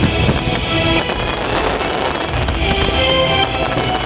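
Fireworks bursting and crackling, a dense run of reports in the first half, over loud show music playing from loudspeakers.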